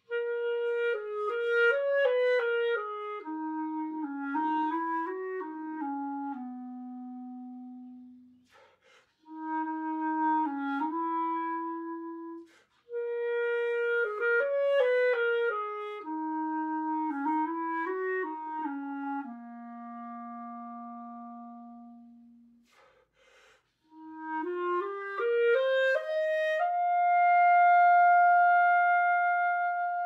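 Solo clarinet playing a slow, sweet jazz ballad melody with no accompaniment. It plays phrases separated by brief pauses for breath, each phrase ending on a long held note. Near the end it climbs to a loud, sustained high note.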